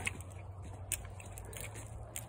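Faint footsteps on soft, muddy dirt, with a few light clicks over a low steady hum.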